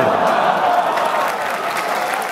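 Large audience applauding steadily right after a joke from the host, with a voice faintly over the clapping.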